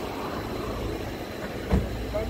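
Steady low rumble of an idling ambulance engine, with one sharp knock about three-quarters of the way through.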